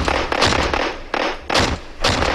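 Several gunshots in quick succession, about five sharp cracks in two seconds, each with a short echo: gunfire sound effects in the track's recording.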